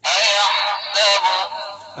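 Recorded Qur'an recitation chanted by a reciter, played back through the small speaker of a Qur'an reading pen: thin and tinny with no low end, starting suddenly.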